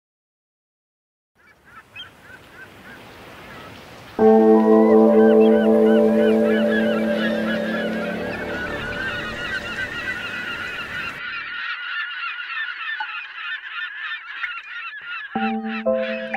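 A flock of birds honking, many short overlapping calls after a moment of silence. A loud sustained musical chord comes in about four seconds in and slowly fades, while the honking goes on, and musical notes come back near the end.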